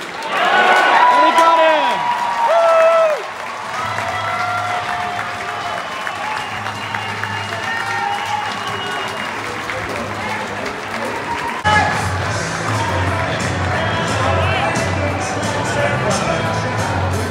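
Music played over a ballpark's loudspeakers above crowd noise, with loud drawn-out calls in the first three seconds. About twelve seconds in, a different track with a steady beat starts abruptly.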